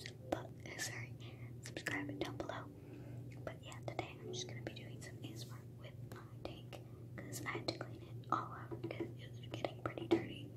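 Close-miked whispering with many soft, sharp clicks scattered through it, over a steady low hum.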